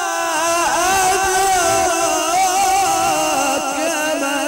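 Melodic Qur'an recitation by a qari: a single solo voice in ornamented, chant-like delivery, its pitch wavering in quick turns and sinking step by step across the phrase.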